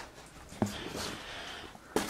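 A person breathing through a respirator mask: a short click about half a second in, then one long breath.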